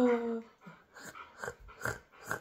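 A husky vocalizing: one drawn-out whining call that falls slightly in pitch and ends about half a second in, followed by several short, quieter grumbles.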